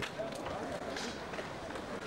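Indistinct chatter of people talking outdoors over a steady background of street noise.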